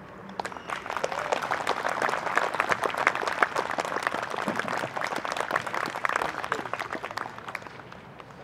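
Audience applauding. The clapping starts about half a second in, swells, and dies away near the end.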